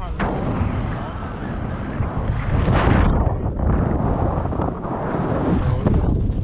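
Wind buffeting the microphone of an action camera held out on a pole during a paraglider flight: a heavy, rumbling rush with a stronger gust about three seconds in.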